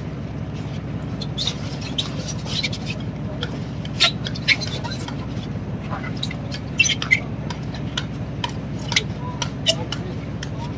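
Steady low drone of a fishing boat's engine, with scattered clicks, rustles and knocks from a net and fabric being handled into a wooden deck hatch. The sharpest knocks come about four, seven and nine seconds in.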